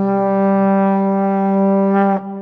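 Trombone playing the long held final low note of a "sad trombone" (wah-wah-wah-waaah) failure sound effect, following three short notes.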